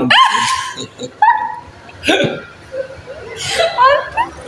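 A woman laughing in several short peals, with bits of speech between them.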